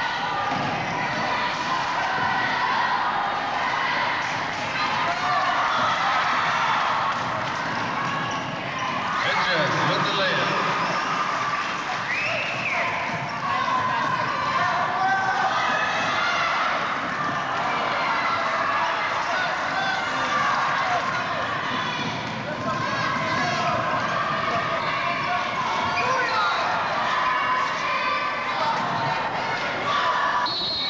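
Indoor basketball game: a basketball bouncing on the hardwood court amid a continuous murmur of spectators' indistinct chatter in the gym.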